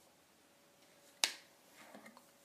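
A single sharp click a little over a second in, over faint room tone.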